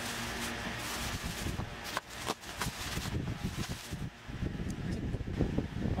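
Rustling and handling as packing is cleared out of a shipping box, with two sharp clicks about two seconds in.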